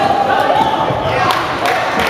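Voices echoing through a large sports hall, with several sharp knocks or thuds from about a second in.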